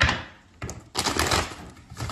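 Tarot cards being shuffled and handled in a few short rustling, clicking bursts.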